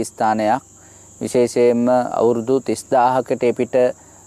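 A man narrating in Sinhala, with a short pause about half a second in. A steady high-pitched whine runs unchanged beneath the voice.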